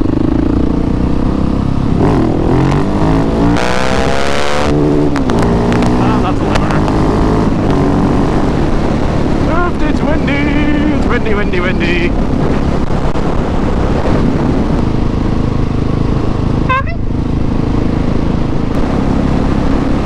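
Husqvarna 701 supermoto's single-cylinder engine pulling along an open road, its pitch rising and falling as the rider works through the throttle and gears.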